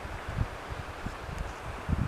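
Wind buffeting the microphone: irregular low puffs and thumps over a faint steady outdoor hiss.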